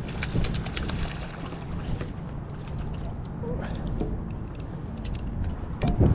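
A hooked sea robin splashing at the water's surface as it is lifted on the line, under a steady low rumble of wind on the microphone, with scattered light clicks.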